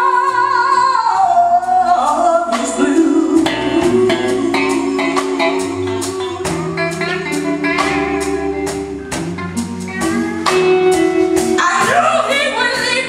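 Live blues band: a woman's belting voice swoops up into a long held high note, then steps down, over electric guitar and bass with a steady beat. Near the end she launches another rising phrase.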